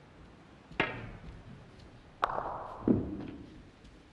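A snooker shot: the cue tip strikes the cue ball about a second in, then comes a sharper click with a short ring as ball strikes ball, and a duller knock follows just after it.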